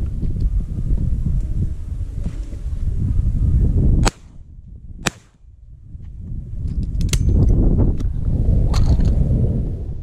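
Wind rumbling on the microphone, broken by sharp cracks of shotgun fire: two about a second apart around four and five seconds in, then more near seven and nine seconds as the wind picks up again.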